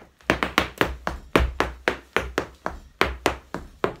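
Irish dance hard shoes striking a floor mat in a fast, uneven run of about twenty taps and heel clicks, roughly five a second, as a hornpipe step is danced; it starts just after the opening and stops near the end.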